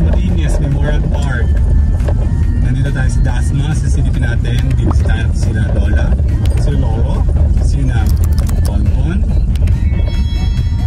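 Steady low rumble of a car driving, heard from inside the cabin, with music playing over it.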